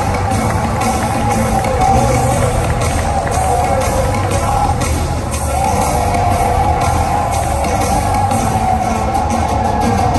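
Music from a highlight video's soundtrack, played loud and steady over a hall's loudspeakers.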